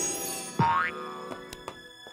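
Cartoon boing sound effect: one quick upward-sliding spring twang about half a second in, over soft background music that fades.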